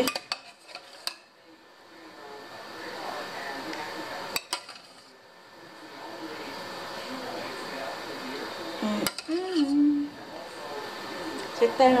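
A metal spoon scooping béchamel sauce from a metal pot and spreading it over a gratin in a glass baking dish, with sharp clinks of spoon on pot several times in the first second, once at about four seconds and once at about nine seconds, between softer scraping.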